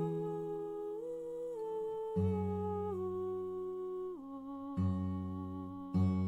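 A slow hymn: voices humming held notes that step from one pitch to the next, over low sustained chords.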